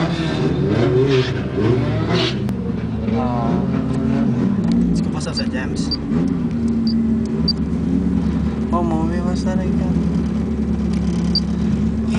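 Car engines in a street drag race, revving hard with the pitch climbing and dropping through the first few seconds as the cars launch, then settling into a steadier drone. Voices call out over the engines.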